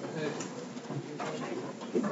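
Faint, indistinct voices and room noise in a lecture room, with no clear words.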